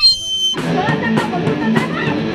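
A brief high toot from a plastic party horn. About half a second in, a rock band starts playing, with guitar and drums.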